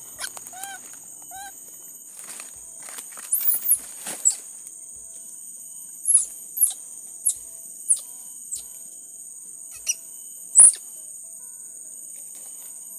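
Baby monkey giving two short whimpering calls about a second in, with dry leaves rustling as it is handled. A steady high insect drone runs underneath, and from about six seconds comes a string of short, sharp, high squeaks about half a second to a second apart, the loudest near the end.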